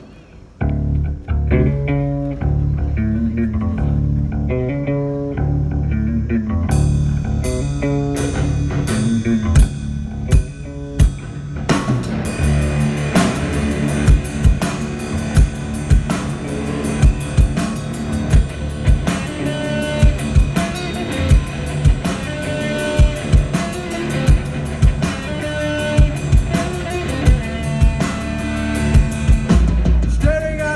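Live rock band playing a song's instrumental opening: an electric guitar and bass riff alone at first, cymbal ticks joining about seven seconds in, then drum hits, and from about twelve seconds the full band with a steady kick-drum beat.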